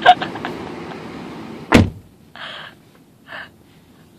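A single loud thump as the car is shut, after which the outside noise goes muffled; then two short scrubbing strokes of a squeegee on the wet car window.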